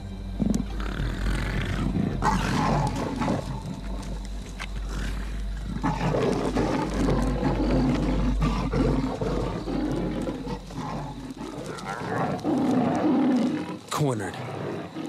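Lions and a leopard calling aggressively at one another in repeated outbursts during a fight over a kill in a tree.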